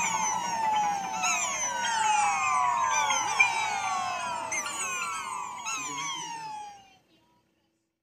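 Cartoon sound effects of many overlapping falling whistle tones, one after another, played through a TV speaker. They fade out and stop about seven seconds in.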